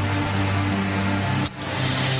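Background music of sustained low chords held steady, broken by a sharp click and a brief drop about one and a half seconds in.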